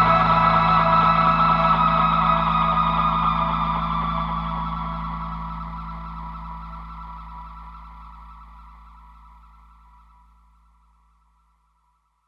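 Closing held chord of an indie rock song on distorted electric guitar with echo effects, steady low notes beneath, fading out to silence about eleven seconds in.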